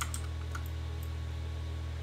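A few faint clicks from a computer keyboard and mouse in the first second, over a steady low hum.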